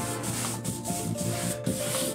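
A paintbrush scrubbing thinned acrylic across the painting surface in several short, scratchy strokes.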